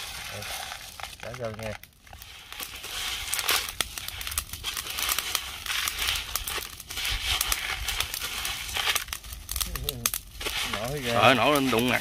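Coarse rock salt on salt-crusted tilapia crackling and popping over a charcoal grill as it meets the heat: a dense run of many small sharp pops.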